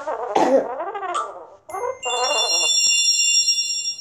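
A girl laughs, then a bright electronic chime of several high, steady tones rings for about two seconds and cuts off suddenly.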